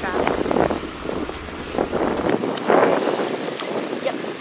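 Wind buffeting the microphone over shallow sea water lapping and rippling. The low wind rumble drops away a little over halfway through.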